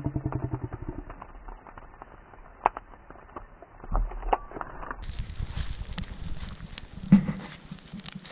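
Burning corn stalks crackling in a smouldering bonfire: a dense run of small pops, muffled for the first five seconds. A few louder cracks come near the middle, and a sharp knock about seven seconds in.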